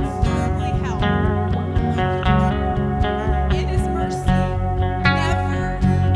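A live worship band playing a song: acoustic guitar, bass and keyboard, with voices singing over it.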